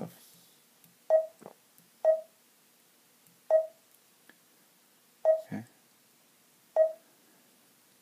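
Garmin Zumo GPS touchscreen giving a short beep at each tap on its screen, five beeps at uneven intervals about a second or more apart.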